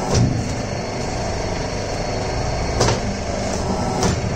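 Double-die paper plate making machine running with a steady hum, with a sharp clunk just after the start and another near three seconds in as the dies press and release.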